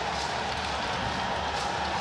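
Steady stadium crowd noise from the stands of a football ground, an even din with no single event standing out.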